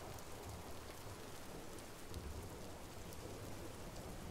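Steady ambient rain falling, with faint scattered drop ticks.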